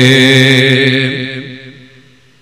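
A man's chanting voice holding one long, steady note that fades out over the second half.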